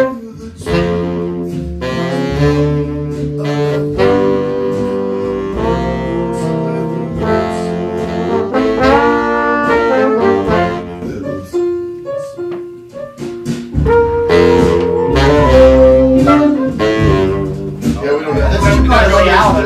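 Horn section of trumpet, saxophones and trombone playing a horn arrangement in ensemble, with held chords and short rhythmic hits. The horns thin out to a few sparse notes around twelve seconds in, then come back in fuller and louder.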